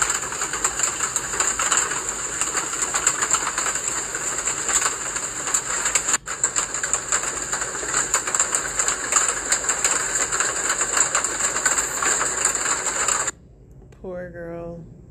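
Harsh, dense hiss full of fast crackling clicks, with a brief dropout about six seconds in; it cuts off suddenly near the end.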